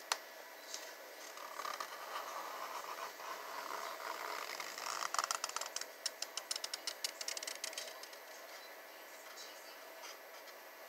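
Felt-tip marker scratching over cardboard as outlines are traced and retraced, with a quick run of short, sharp strokes from about halfway through.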